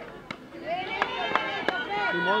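Several high-pitched voices shouting and calling from the players and spectators at a softball game, with a few sharp knocks scattered through, about four in a second and a half.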